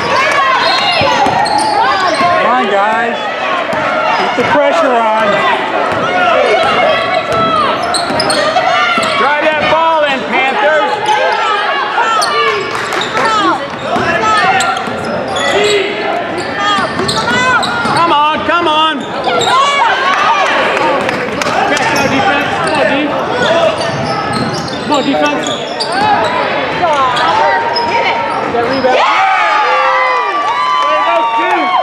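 Basketball being dribbled and bounced on a hardwood gym floor during play, under a steady din of players' and spectators' voices, echoing in the gym.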